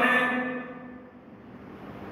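A man's speech over a microphone trails off in the first half-second, then a short pause of faint room noise.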